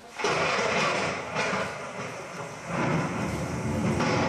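A loud rushing, rumbling noise starts suddenly and swells twice. It is a stage sound effect played between pieces of music.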